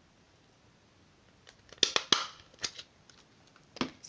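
Handheld stapler snapping shut to drive a single staple through a small stack of fan-folded paper: two sharp clicks close together about two seconds in, followed by a couple of lighter clicks.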